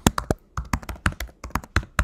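Typing on a computer keyboard: a quick, uneven run of keystrokes, about seven a second.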